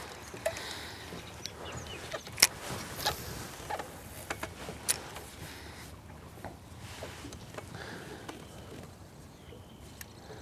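Steady outdoor background hiss with scattered sharp clicks and knocks, the loudest about two and a half seconds in and another near five seconds.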